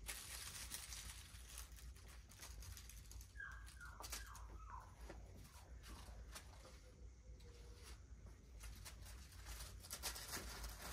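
Faint rustling, scuffling and light taps of a mini Aussiedoodle puppy moving about on a concrete floor while a fabric toy is handled. A few short, faint squeaks fall in pitch between about three and five seconds in.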